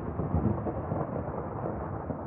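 A steady, noisy low rumble like thunder, the fading tail of the closing logo's sound effect.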